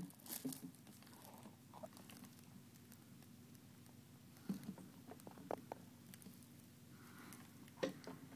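Near silence with a faint steady low hum and a few scattered faint taps and clicks, most of them in a cluster past the middle.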